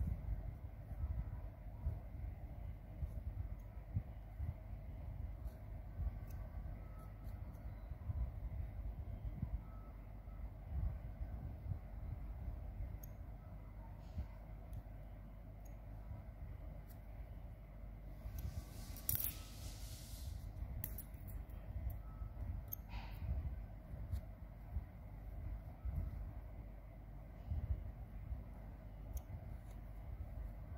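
Quiet handling noise: a low rumble from fingers and fabric close to the microphone, with faint clicks and snips of small scissors trimming loose thread from a plush toy. A brief rustle about nineteen seconds in and a click a few seconds later stand out.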